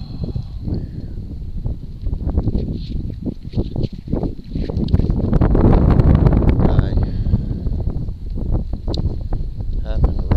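Rustling, rumbling handling noise on a body-worn camera's microphone, with scattered crackles, getting louder about halfway through.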